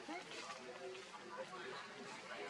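Faint, indistinct voices, several overlapping at once, with no words that can be made out.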